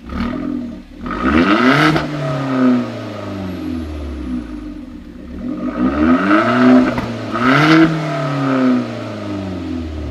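2010 Hyundai Genesis Coupe 2.0T's turbocharged four-cylinder engine revving at a standstill, heard at the exhaust tip with the second catalytic converter and resonator deleted. A short blip, then two long revs, about two and seven seconds in, that rise and fall back to idle.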